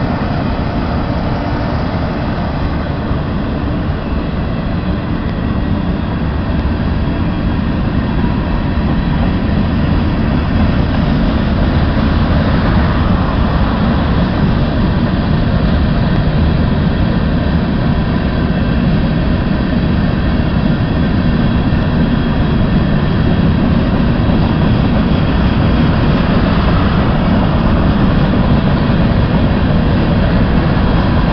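Freight train's covered hopper cars rolling past close by: a steady rumble of steel wheels on the rails that grows a little louder about ten seconds in.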